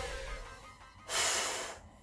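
A woman's single audible exhale through the mouth, about a second in, lasting about half a second and fading: breath recovering after exertion.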